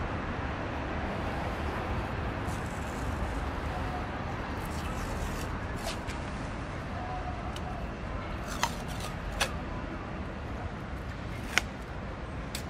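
Steady outdoor background rumble, like distant traffic. Over it come a few short rustles and three sharp clicks as paper masking tape is unrolled and pressed onto a car tyre's sidewall.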